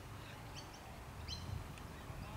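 Small birds chirping: a few short, high calls scattered through the moment, over a low steady outdoor rumble.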